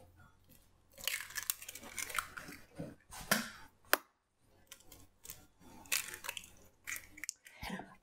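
Brown hen's eggs being cracked one after another and their shells broken apart over a glass mixing bowl: a string of sharp cracks and crunchy shell crackles.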